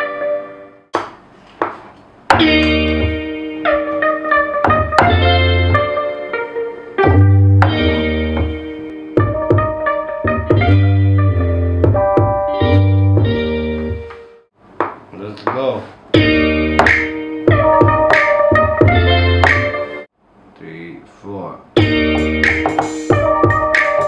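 A hip-hop beat in progress playing back in a small studio: electric guitar chords and a counter melody, run through an amp effect, over a heavy bass line. The playback cuts out briefly three times.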